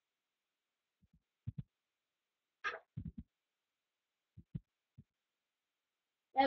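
Quiet room with a handful of faint, short, low thuds, mostly in close pairs, and one brief soft hiss about two and a half seconds in.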